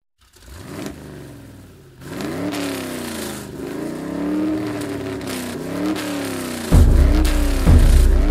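Car engine revving, its pitch climbing and falling back in several slow swells. Near the end a heavy bass beat comes in.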